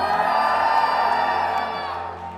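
A high-pitched scream swept up into a single note and held for about two seconds, then fading, over crowd noise in a concert hall. It answers a call from the stage to shout now that the clicking has stopped.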